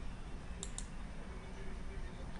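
Two computer mouse clicks in quick succession a little over half a second in, over a faint steady low background noise.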